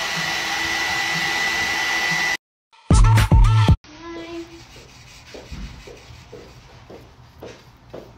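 Hair dryer blowing with a steady whine, drying paint on a ceramic piece, then cutting off suddenly about two and a half seconds in. A short loud burst of pitched sound follows, then faint tapping about twice a second.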